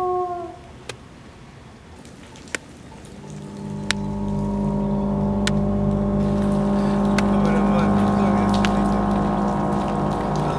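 A drawn-out cry fades out at the start. Then, after a few faint clicks, a low sustained drone of several held tones with a pulsing undertone swells in about three and a half seconds in and holds steady, like a tense film-score pad.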